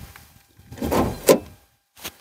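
A short rustle, then a single sharp click about a second in, from the driver's side of a 1996 Buick Roadmaster wagon: the hood release being pulled from inside the car.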